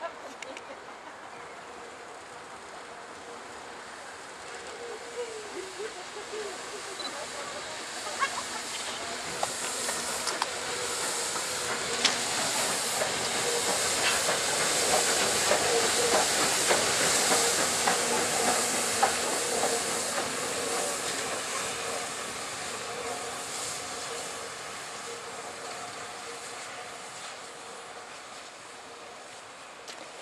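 The SNCF 241P17, a 4-8-2 compound steam locomotive, passing close by with steam hissing. The hiss swells to its loudest about halfway through as the engine goes past, with clicks of the wheels over the rail joints, and then fades. Up close it is a racket.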